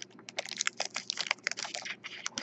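Foil trading-card pack wrapper crinkling as it is handled, a rapid irregular run of small crackles.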